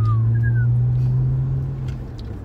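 Car cabin drone from the engine and road while driving, a steady low hum that edges up slightly in pitch and eases off near the end. Two faint short high chirps sound in the first half second.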